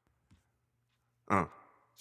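Isolated rap vocal: a faint low hum, then one short male "uh" ad-lib, falling in pitch, about a second and a quarter in.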